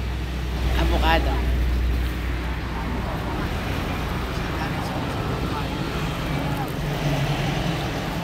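A motor vehicle passing on the road, its low rumble fading about two seconds in and leaving a steady hum of traffic.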